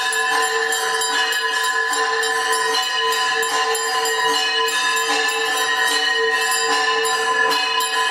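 Temple bells rung continuously for an arti, a steady ringing tone over quick, even strikes, several a second.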